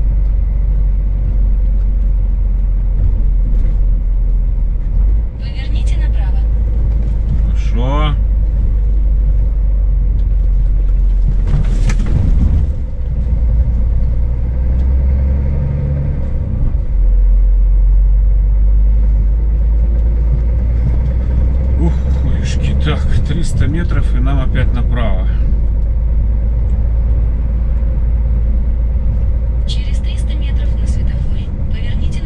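Steady low rumble of a Scania S500 truck's engine and road noise, heard from inside the cab while driving slowly, with a single knock about twelve seconds in.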